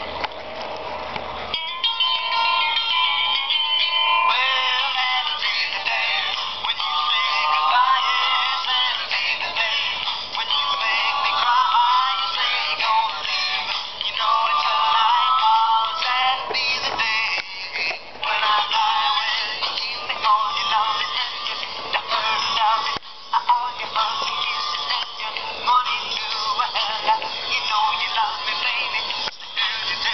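Tamco Soundwagon toy VW bus record player driving round a vinyl LP, playing a rock record with singing through its small built-in speaker. The sound is thin and tinny with almost no bass, and the music comes in about a second and a half in.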